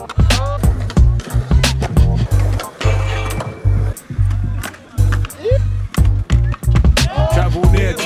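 A hip-hop track with a heavy, pulsing bass beat and a voice over it. Under it are skateboard sounds on concrete: wheels rolling, boards grinding and sliding on a ledge and a metal rail, and sharp clacks as tails pop and wheels land.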